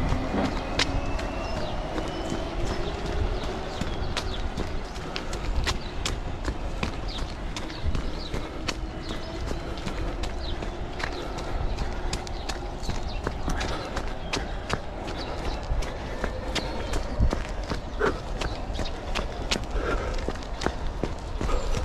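A runner's footfalls on a paved sidewalk in a steady rhythm, over the low hum of street traffic, with a vehicle engine passing.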